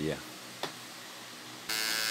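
A light click, then near the end a Wahl Hero cordless trimmer fitted with a ceramic T-blade switches on and runs with a steady buzz and strong high hiss. It sounds a bit better, but not very good.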